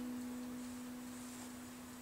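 A single guitar note left ringing alone at the end of the song, one steady tone slowly fading away.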